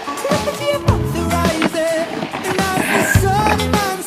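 Background music with a low beat and a wavering melody line, at a steady level.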